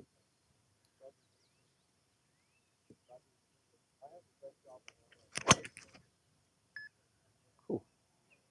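Mizuno ST190 driver striking a golf ball off a tee at full swing speed. It makes one sharp, solid crack about five and a half seconds in, the loudest sound here, with a short ring after it.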